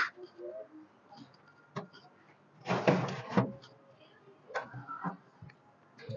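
Clicks and clattering from a countertop toaster oven being loaded: cake cups set on its metal tray and the tray and door pushed shut. A longer rattle about three seconds in is the loudest part, with a shorter one near the end.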